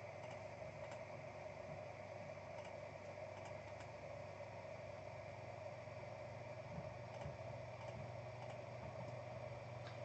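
Quiet room tone with a steady low hum, and a couple of faint computer-mouse clicks about two-thirds of the way through.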